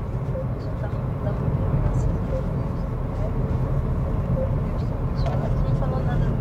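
Steady low rumble of tyre and engine noise heard from inside a Honda Civic's cabin as it drives along at speed.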